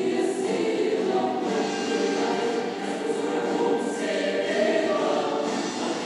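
Dramatic film-trailer music with a choir singing long held notes, a higher line rising above it about four seconds in.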